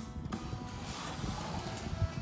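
Music playing at low volume through loudspeakers driven by a vintage Yamaha A-501 stereo amplifier.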